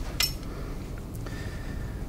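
Katana fittings clinking as the metal tsuba guard is slid down the bare tang onto the collar: one sharp metal click just after the start, then a fainter one about a second in.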